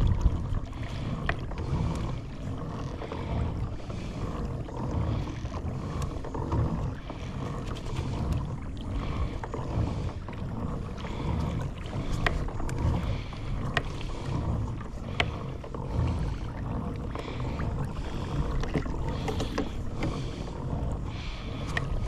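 Small waves lapping and slapping against a plastic kayak hull in an uneven rhythm, with a few sharp clicks scattered throughout.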